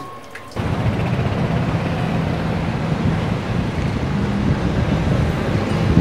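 Street traffic noise mixed with wind on the microphone: a loud, steady rushing that cuts in abruptly about half a second in.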